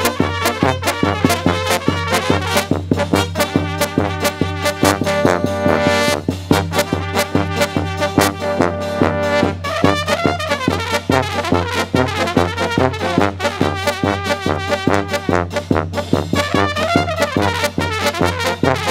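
Serbian brass band (trubački orkestar) playing a lively tune: trumpets and tenor horns over a tuba bass line, with a bass drum keeping a steady beat.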